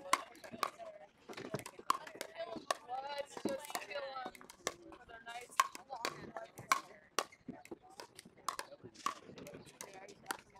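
Pickleball paddles striking the plastic ball in a rally: a sharp pop about every half second to a second. A voice talks briefly in the middle.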